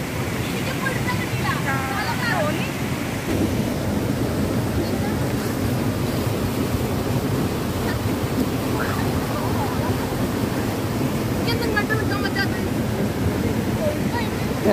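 Stream water rushing steadily over a rocky cascade, heard close up, with faint voices calling a couple of times.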